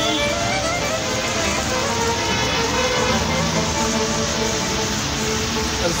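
Background music, an Arabic song in Middle Eastern style, over a steady wash of street traffic noise. Near the end a new note slides up and holds.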